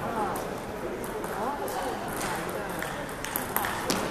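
Table tennis ball clicking off paddles and the table in a rally, several sharp clicks mostly in the second half, over background chatter of voices.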